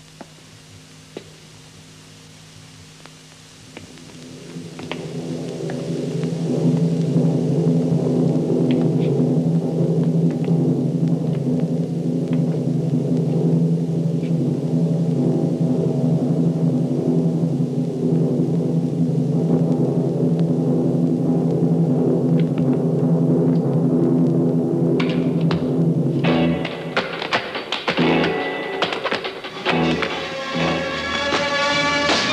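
Dramatic film score. After a few quiet seconds, low held chords with timpani swell up and hold steady. Near the end, sharp percussive hits come in and the music shifts to higher notes.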